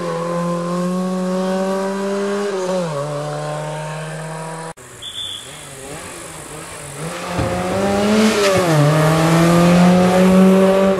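Fiat Seicento rally car's small four-cylinder engine held at high revs, its pitch dipping and recovering a few times as the throttle is lifted and reapplied. The sound cuts off about halfway, then the engine returns quieter and grows steadily louder as the car comes close.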